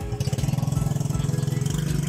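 An engine idling steadily, a low, even pulsing hum.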